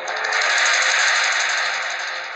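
A fast rattling roll that comes in suddenly and fades away over about two seconds: a dramatic sound effect laid over a reaction shot.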